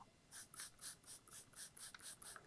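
Plastic trigger spray bottle squirting water in quick repeated pumps, about four short faint sprays a second, misting a coil of string.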